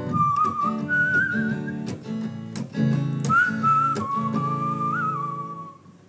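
A whistled melody over a strummed hollow-body electric guitar in an upbeat folk tune. The whistle carries the tune in a single clear line while the guitar keeps an even strumming rhythm. Both drop away briefly near the end.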